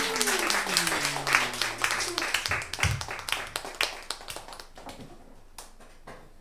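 Small audience applauding after a song, the clapping thinning out and fading away by about five seconds in. Over the first two seconds a voice calls out in one long falling tone.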